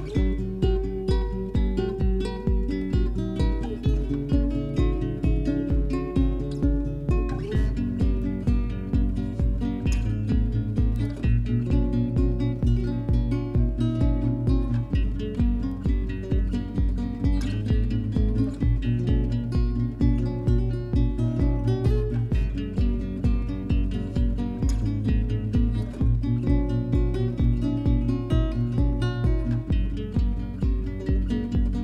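Background music led by guitar over a steady beat.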